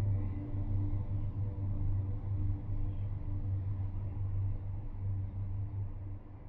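Low, steady droning hum of a dark ambient film score, with a deep rumbling bass and a few faint held tones above it.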